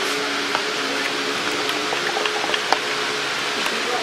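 Steady air-conditioning hiss filling a large shop, with faint held tones underneath and a few light clicks.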